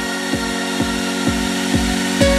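Electronic dance music in a build-up: a kick drum pulses under sustained synth chords, its hits quickening to about four a second as the track heads into a drop.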